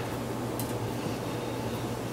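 Steady room noise: a low, even hum with a soft hiss, and a faint tick about a third of the way in.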